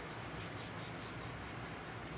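Sheet-music paper being handled on an organ's music desk: a soft papery rustle in a row of faint, fading ticks, over a low steady hum.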